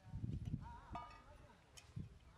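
A low rumble in the first half second, then a short, wavering animal call lasting about half a second, followed by a couple of light clicks near the end.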